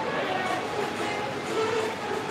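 Steady background hubbub of a large, echoing indoor shopping-mall hall.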